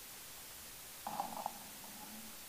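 Quiet room tone, then about a second in a brief, low, muffled murmur of a man's voice close to the microphone.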